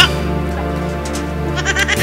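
Background music with a steady low bass line, joined near the end by a short wavering, bleat-like cry.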